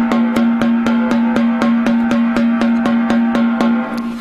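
Drum played with sticks in an even, steady run of strokes, about six a second, over a steady ringing pitch: a paradiddle practice pattern.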